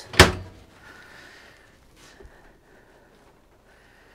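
Microwave oven door pushed shut by hand, latching with a single sharp thunk. A faint click follows about two seconds later.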